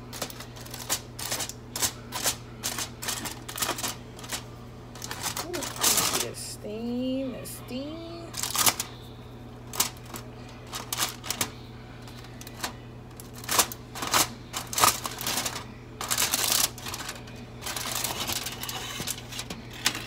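Aluminium foil crinkling and crackling as it is peeled back off a baking pan, in many quick sharp crackles with rustling in between, over a steady low hum.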